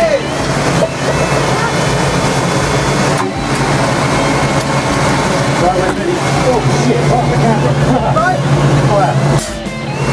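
Tank engine running with a loud steady drone, heard from inside the crew compartment, with indistinct voices over it. The noise dips briefly near the end.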